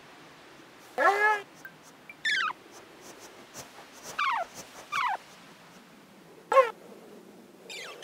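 Cartoon creature vocalizations. A short arching call comes about a second in. Three high chirps each slide down in pitch. A brief sharp call, the loudest, comes near the end.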